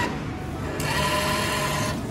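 Claw machine's banknote acceptor whirring as its small motor draws in a paper note. The whir fades at the start and runs again from a little under a second in.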